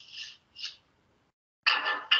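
A metal bolt being pulled out of its mount: two short scraping rubs, then a louder run of rattling, clattering strokes near the end.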